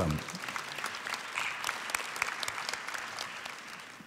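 Audience applauding, a dense patter of clapping that slowly fades toward the end.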